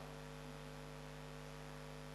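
Steady electrical mains hum with several fixed low tones, from the microphone and sound system picking up electrical interference.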